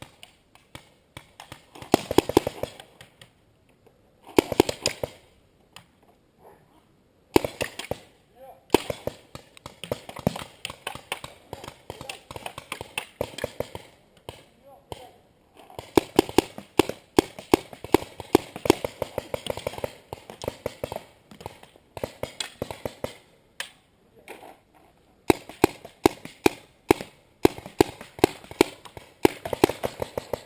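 Paintball markers firing in rapid strings of sharp pops, in bursts lasting one to several seconds with short lulls between.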